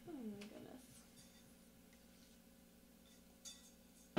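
Near silence with a low room hum. In the first half-second there is one short, faint vocal sound falling in pitch, and later a couple of faint ticks.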